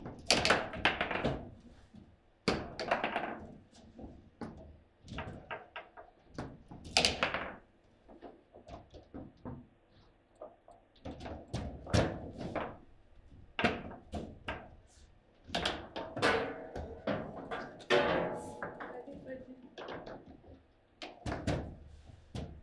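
Foosball table in play: an irregular run of sharp clacks and knocks as the ball is struck and passed by the men on the rods, coming in clusters with short lulls between them. In the second half a shot goes into the goal.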